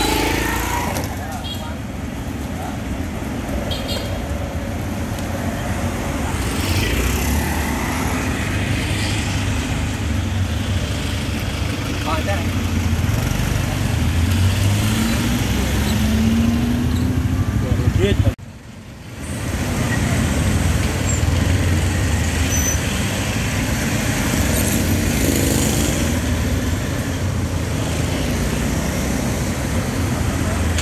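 Steady city street traffic, with motor vehicle engines running and passing, under people talking. The sound drops out briefly at a cut about two-thirds of the way through, then the traffic resumes.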